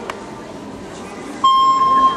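A steady electronic beep tone sounds from about one and a half seconds in, over a murmur of voices in the hall. It is a start signal just ahead of the gymnast's routine music.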